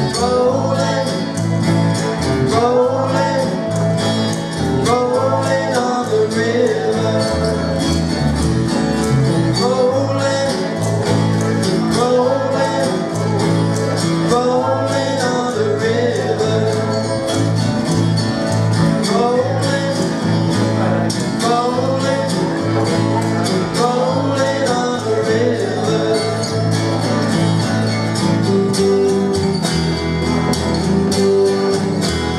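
Small acoustic band playing a country-style song live: acoustic guitar over an upright double bass, with a melody line that recurs every couple of seconds.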